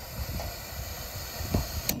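Gas hissing from a Coleman propane camp stove burner as its control knob is opened, with a couple of sharp clicks near the end.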